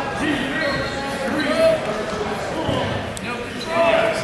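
Overlapping shouts from spectators and coaches in a large echoing gym, none of them clear words, with a single sharp knock about three seconds in.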